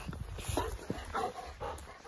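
A dog making a few short, faint squeaky whimpering sounds while it plays.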